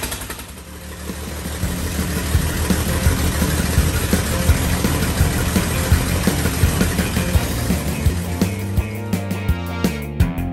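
Freshly rebuilt inline-six engine of a 1952 GMC pickup running steadily with an uneven, pulsing beat just after its first start, with no muffler, sounding like a tractor. Rock music comes in near the end.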